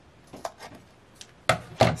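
A few faint paper-handling clicks, then two sharp knocks about a third of a second apart near the end as collaged cardstock pieces are handled over a wooden tabletop.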